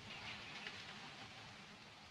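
Faint handling noise of a rifle scope being shifted in its mounting rings on the rail, over a soft steady outdoor hiss.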